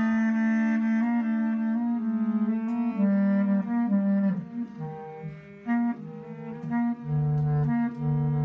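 Bass clarinet and cello improvising together: the bass clarinet plays a slow line of held notes that step between pitches while the cello bows alongside. Near the end a deeper, louder bowed cello note comes in.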